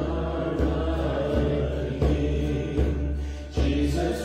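A slow worship song: acoustic guitars strummed with a man and a woman singing long, held notes.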